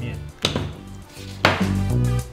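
Two sharp clicks about a second apart, from small steel angular-contact ball bearings knocking together as they are handled and paired, over steady background music.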